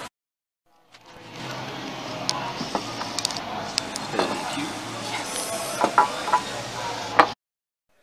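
Restaurant dining-room ambience: a murmur of voices with scattered short clinks and knocks of dishes and cutlery on a table. It cuts to dead silence for about the first second and again near the end.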